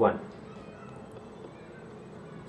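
A man says one short word ("one") right at the start, then a pause with only low room tone.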